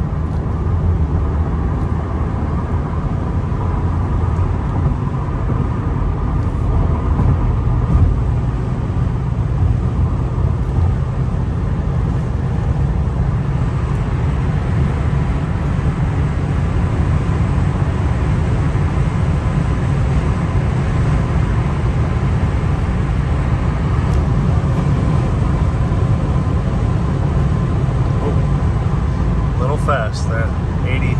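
Steady cabin noise of a 2001 Nissan Maxima GLE cruising at freeway speed: tyre and road roar with wind noise on a windy day, a constant low rumble throughout.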